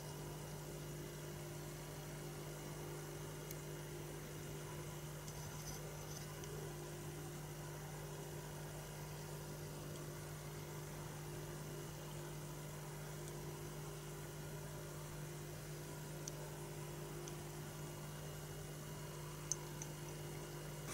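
Faint, steady electrical hum over a low hiss: room tone, with one small click near the end.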